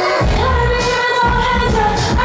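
Live pop music: a woman singing into a microphone over a dance track, with a heavy bass beat coming in just after the start.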